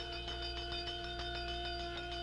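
A quiet passage of live jazz: two steady ringing tones sustain over a soft, quick, even tapping.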